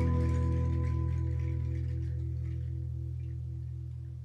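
A live band's last chord held and ringing out, slowly fading, with a wavering pulse about five times a second.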